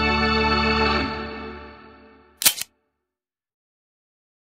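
A held Hammond organ chord that fades out over about a second and a half. About two and a half seconds in comes a brief, sharp burst of noise.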